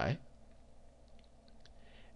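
A few faint, light taps of a pen stylus on a drawing tablet as electron dots are drawn, over quiet room tone.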